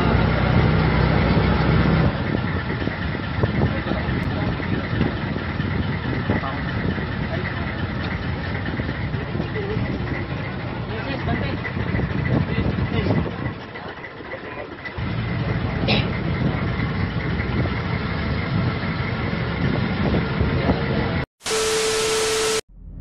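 A tour boat's engine running steadily under way, heard from on board, with the sound dipping for a moment around the middle. Near the end it cuts off, and a steady electronic test-tone beep plays over colour bars.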